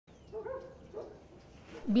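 A dog barking faintly in the distance, two or three short barks within the first second.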